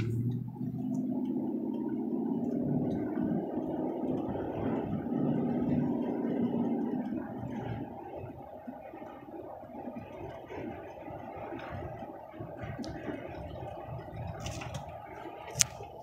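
Pickup truck driving slowly on a paved road, heard from inside the cab: a steady low rumble of engine and tyres, louder for the first seven seconds or so and quieter after. A single sharp click comes near the end.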